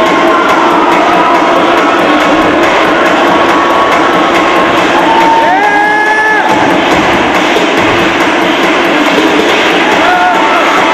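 Audience cheering and shouting loudly and steadily, with music playing, and one high rising call about five and a half seconds in.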